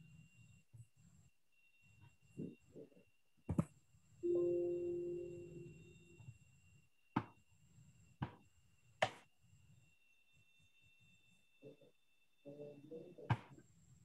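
A few faint, sharp computer-mouse clicks spaced seconds apart, made while closing windows on a computer to start a screen share. About four seconds in, a short low tone fades away over two seconds, and faint brief mumbling comes near the start and the end.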